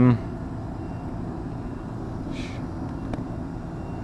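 Steady low mechanical hum and background noise, with a faint click about three seconds in.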